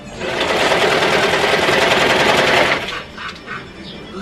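Overlock serger stitching at speed in one run of about two and a half seconds, with a fast, even stitch rhythm, starting just after the beginning and stopping abruptly.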